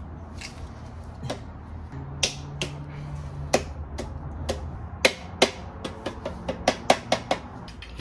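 Sharp metallic clinks and taps of tools and clutch hardware being handled. They are sparse at first and come quickly near the end, some ringing briefly.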